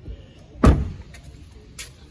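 A 2017 Audi A4's door being shut: a single solid thud about two-thirds of a second in, followed by a faint click near the end.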